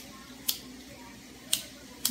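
Child-proof lighter clicked twice, about a second apart, as two sharp clicks that fail to produce a flame.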